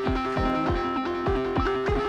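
Electronic beat: a plucked-sounding melody stepping between a few notes over a kick drum that hits about three times a second.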